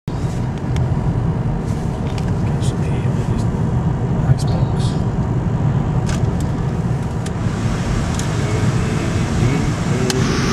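Steady low road and engine rumble inside a moving car's cabin, with scattered light clicks throughout.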